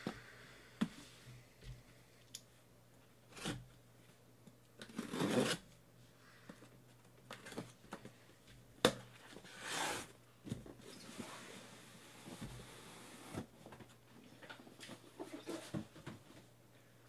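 A cardboard shipping case being handled, opened and unpacked by hand: scattered knocks and scrapes of cardboard, with a few short rasping tears and a steadier rasp of about three seconds past the middle, as the sealing tape is torn open and the inner boxes are slid out.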